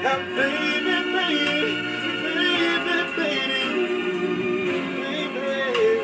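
A man singing a slow ballad over a backing music track, holding long notes that bend and slide in pitch.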